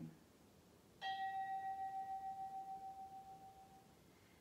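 A single bell tone, struck once about a second in, ringing with a slow wavering pulse and fading away over about three seconds. It marks the close of the meditation.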